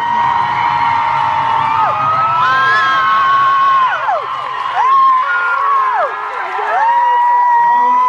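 Audience screaming and cheering, with several high-pitched screams held for a second or two and overlapping, some sliding up or down.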